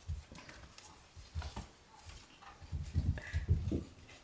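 Shiba Inu puppies moving about on paper pet sheets: irregular dull thumps with light paper rustling, the heaviest thumps coming in a cluster near the end.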